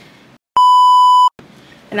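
An editor's censor bleep: a single steady, high-pitched beep about three-quarters of a second long that starts and stops abruptly, with dead silence cut in just before and after it.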